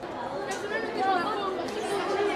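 Many children's voices chattering at once, overlapping talk of a group of schoolchildren, coming in abruptly at the start.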